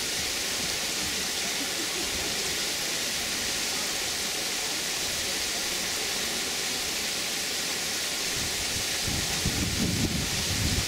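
A steady, even hiss of outdoor background noise, with faint voices coming in near the end.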